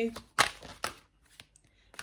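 An oracle card deck being shuffled by hand: a few crisp snaps of the cards, the loudest about half a second in, then a quieter one and a faint tap.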